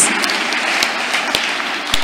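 A congregation applauding, an even clapping that carries on after the call to put their hands together.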